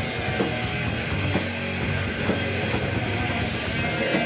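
A thrash metal band playing live: distorted electric guitars over a drum kit at a steady, loud level.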